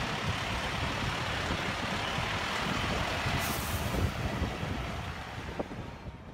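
Outdoor street noise carried by a heavy vehicle's engine rumble, with a brief high hiss a little past halfway. The sound fades out near the end.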